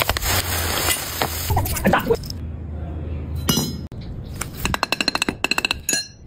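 Molten metal poured into a sand mould, with a hissing rush for about two seconds. Near the end comes a quick run of light metallic clinks, about ten a second, with a short ringing tone.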